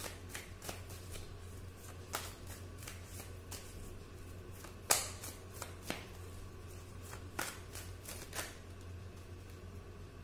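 A deck of tarot cards being shuffled in the hands: irregular soft card clicks and slaps, the sharpest about five seconds in, over a low steady hum.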